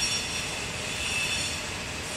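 Steady outdoor background noise with a few faint, level high-pitched tones running through it and no distinct events.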